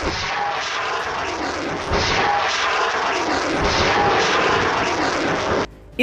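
A loud, steady roaring rush of noise, like a rocket motor in flight, with a few dull thumps about every two seconds. It cuts off suddenly shortly before the end.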